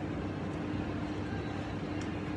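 A steady machine hum with one constant mid-low tone over a lower drone, unchanging throughout.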